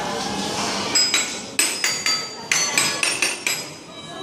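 Toy xylophone's metal keys struck with a mallet: about a dozen quick, irregular ringing notes of several different pitches, starting about a second in.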